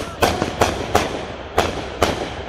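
Consumer aerial fireworks going off: about five sharp bangs in quick, uneven succession as the shells burst overhead.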